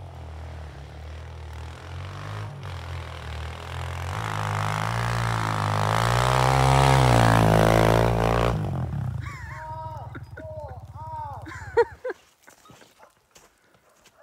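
Small single-cylinder four-stroke Kawasaki pit bike engine running through snow, its note growing louder and rising in pitch, peaking about six to eight seconds in, then falling back to a lower putter. Near the end there is a sudden knock and the engine cuts out.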